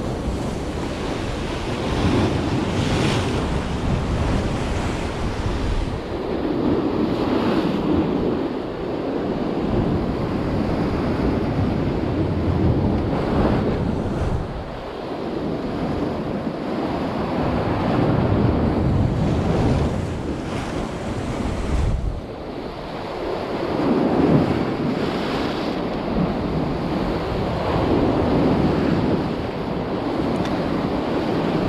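Sea surf breaking and washing against shoreline rocks, swelling into a fresh surge every few seconds, with wind buffeting the microphone.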